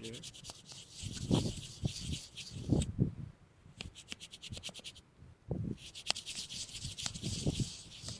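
Handling noise: fingers rubbing and scratching over the camera body right by its microphone. It comes as fast runs of scratchy clicks in several bouts, mixed with dull thumps, and it stops briefly about five seconds in.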